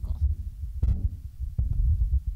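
Handling noise from a handheld microphone being passed and gripped: irregular low thumps and rumbles with a couple of sharp clicks, about one and one and a half seconds in.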